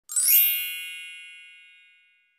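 Bright chime sting for a channel's logo intro: a quick upward shimmer, then a bell-like ring of several tones fading out over about two seconds.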